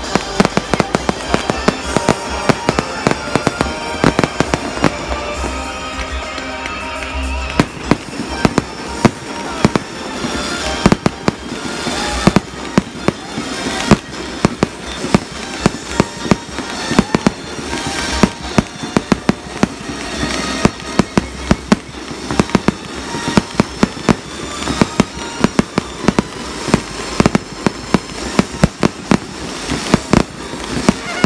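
Fireworks display: a dense, continuous barrage of shells bursting, with sharp bangs and cracks several times a second throughout.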